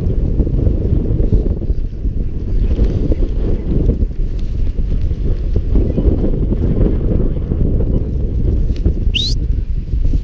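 Wind buffeting the camera microphone: a loud, steady low rumble throughout. A single brief, high, upward-sweeping chirp comes near the end.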